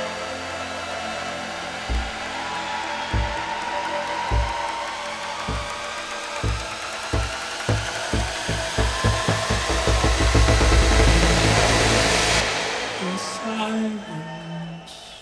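Live electronic music build-up: a kick drum hits at a steadily quickening rate into a roll under a rising noise sweep, which cuts off about twelve seconds in, leaving a sparse break before the drop.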